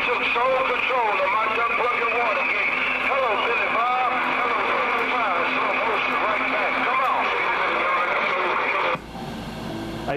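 CB radio receiver playing distant skip stations: garbled, noisy voices over a steady hiss, with the signal cutting out suddenly about nine seconds in.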